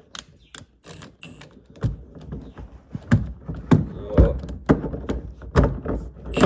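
Irregular metallic clicks and knocks from a hand tool being worked on a seat-belt mounting bolt in the floor of a 1977 Corvette, roughly two a second, with heavier thuds in the second half.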